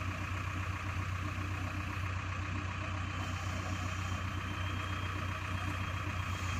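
JCB backhoe loader's diesel engine idling steadily, a low even hum.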